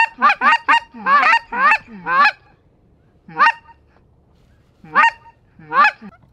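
Goose call blown by a hunter: a quick run of about eight honks, each jumping sharply up in pitch, then three single honks spread over the rest of the time.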